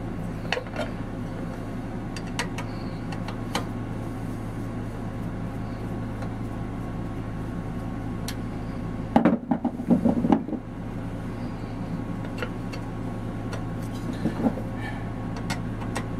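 A screwdriver backing screws out of the aluminium crankcase cover of a Craftsman air compressor pump: scattered small clicks and taps over a steady low hum, with a louder burst of handling noise lasting about a second roughly nine seconds in.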